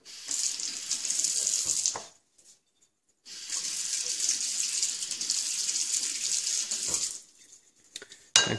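Water running from a kitchen tap in two spells, about two seconds, then a short pause, then about four seconds, with a steady hiss.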